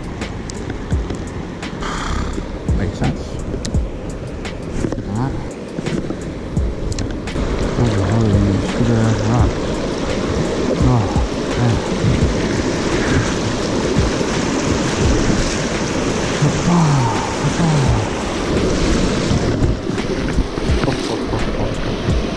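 River water rushing steadily over a shallow riffle, with background music playing over it.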